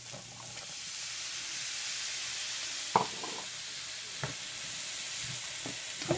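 Ground chicken, onions and black beans sizzling in a hot frying pan as the beans are poured in and stirred; the sizzle grows louder over the first second or two. A sharp knock about three seconds in and a lighter one a second later.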